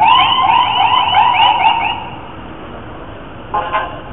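Emergency vehicle's electronic siren sounding a fast yelp, about four or five quick rising-and-falling sweeps a second, for about two seconds and then cutting off. A short, steady horn-like tone follows just before the end.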